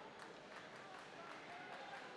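Faint ice hockey arena ambience: a low crowd murmur with scattered distant voices and a few faint knocks from play on the ice.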